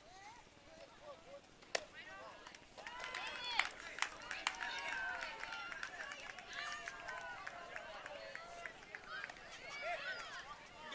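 A baseball bat hits a pitched ball with a single sharp crack just under two seconds in. About a second later many high-pitched voices of spectators and players start shouting and cheering and keep it up.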